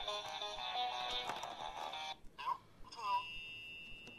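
Electronic music from an Oreo DJ Mixer toy turntable playing, then cutting out suddenly about two seconds in: the device keeps stopping. A couple of short voice-like sounds and a faint steady high tone follow.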